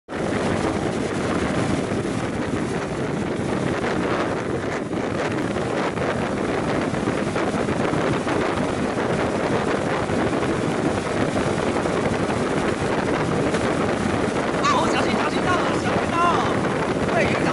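Boat under way with the steady rush of its churning wake and engine, and wind buffeting the microphone.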